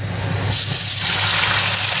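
Oil poured into a hot iron wok starts to sizzle, then about half a second in a much louder, steady sizzle sets in as sliced skin-on pork belly hits the hot oil to be fried dry.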